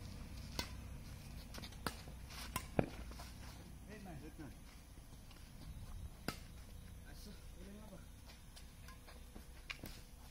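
Badminton rackets striking a shuttlecock in a rally: about six sharp cracks at uneven intervals, the loudest about three seconds in.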